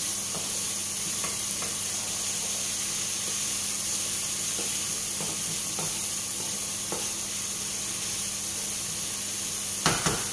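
Masoor dal with tomato, onion and green chili sizzling steadily in a frying pan, with faint scrapes of a wooden spatula stirring it. A sharp knock near the end.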